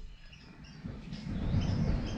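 Outdoor background: a few faint, short bird chirps over a low rumble that grows louder about a second in. No knife strokes.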